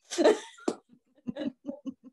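A woman laughing: a sharp, breathy outburst near the start, then a few short, soft chuckles.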